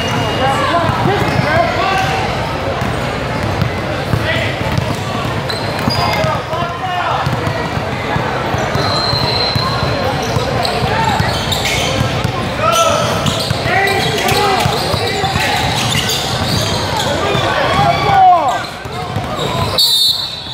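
Basketball game sounds in a gym: continuous overlapping chatter and shouts from spectators and players, with a basketball bouncing on the hardwood floor and occasional short squeaks.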